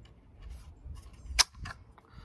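Rock Island Armory TM22 .22 LR rifle's magazine being released and its bolt snapping forward: one sharp metallic click a little over halfway through, with fainter clicks just before and after. The bolt drops as soon as the magazine comes out, because the rifle will not hold its bolt open without a magazine in.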